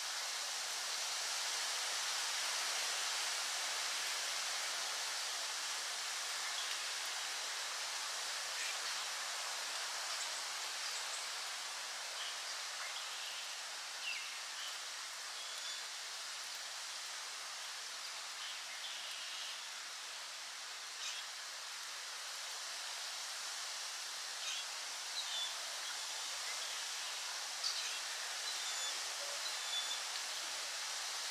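Outdoor woodland ambience: a steady hiss with short bird chirps scattered through it, more of them in the last several seconds.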